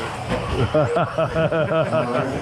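A man laughing in a quick run of 'ha-ha' pulses, about six a second, starting about half a second in.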